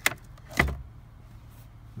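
A car's glove compartment being opened: a sharp click of the latch, then about half a second later a louder knock as the lid drops open against its stop.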